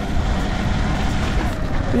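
Sur Ron electric dirt bike riding over a rough, muddy field: wind rumble on the microphone and tyre noise, with a faint steady motor whine that fades out near the start.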